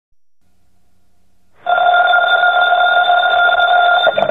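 A telephone bell ringing, a steady continuous ring that starts suddenly about a second and a half in after faint recording hiss.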